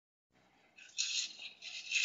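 A person's breathy, hissing exhalations: two or three short unvoiced breaths beginning under a second in.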